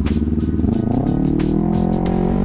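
Sport motorcycle engine accelerating, its pitch climbing steadily from about halfway in, with background music playing over it.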